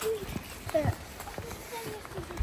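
Hikers' voices talking, with footsteps thudding on a packed dirt forest path.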